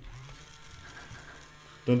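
Small electric motor of a Loopin' Chewie toy whirring steadily and quietly as it starts swinging the arm round. A voice begins chanting near the end.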